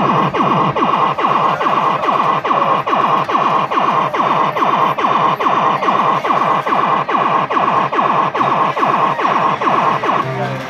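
Fruit machine playing a repeating electronic sound effect: a fast, even run of falling tones, about three a second, over a steady high tone. It stops at the end.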